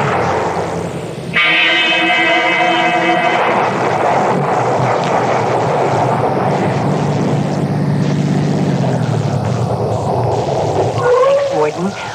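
A short laugh, then a sustained dramatic music chord from about a second in, giving way to a steady wash of rain sound effect with a low drone underneath that fades out near the end: a radio-drama scene transition.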